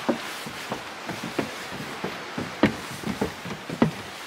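Footsteps climbing wooden stairs: uneven hollow thuds of feet on the boards, roughly two a second, with the loudest near the end, over a steady outdoor hiss.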